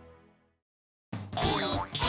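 The tail of the closing theme music dies away into silence, then about a second in a loud animated-logo jingle starts, full of sliding, wobbling pitches.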